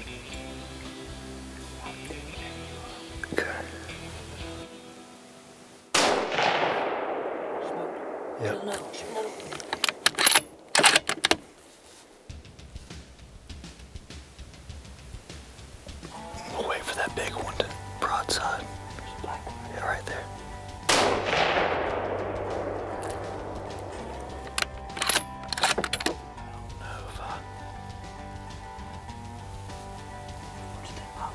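Two scoped-rifle shots at feral hogs about fifteen seconds apart, each a sudden crack followed by a long echo that fades over a couple of seconds. Between them come sharp clicks as the bolt is worked to chamber another round. Background music runs underneath.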